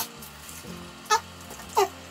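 Two short high-pitched whines, each falling in pitch, about two-thirds of a second apart, over a faint steady hum.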